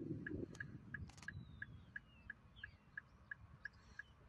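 A short, high-pitched electronic beep repeating evenly about three times a second, over a low rumbling noise that is loudest at the start, with a few faint bird chirps.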